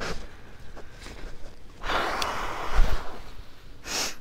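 A person's long breathy exhale, about a second long, with a sharp click and a low thump during it and a short rustle at the end.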